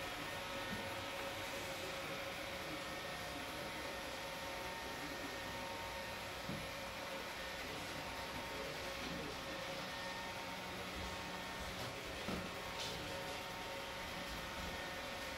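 Small round robot vacuum running across a hardwood floor: a steady whir of its motor and brushes, with a faint steady tone, and a couple of faint knocks about halfway and near the end.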